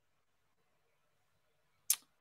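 Near silence: dead air while one host's microphone is muted on a remote call. Just before the end comes one brief, sharp click.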